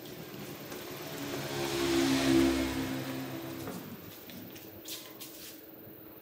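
A motor vehicle's engine passing by, swelling to a peak about two seconds in and fading away by about four seconds.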